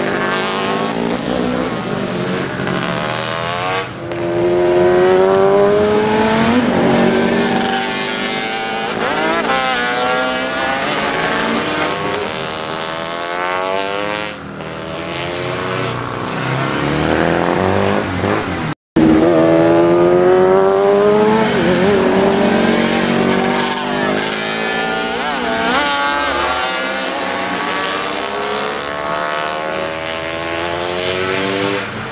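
Racing motorcycle engines revving hard as the bikes accelerate past, one after another, the pitch climbing and then dropping back again and again with each gear change. The sound cuts out for an instant about two-thirds of the way in.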